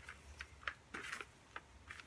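Faint, irregular clicks and rustles of chunky bark-based potting mix stirred by hand in a plastic bucket.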